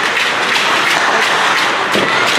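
Arena sound of an ice hockey game in play: a steady crowd din with scattered sharp clicks and taps from sticks, skates and puck on the ice.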